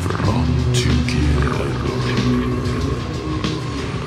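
Heavy rock music in an instrumental passage with no words: a dense, sustained low band, heavy guitar and bass, with a few crashes in the high range.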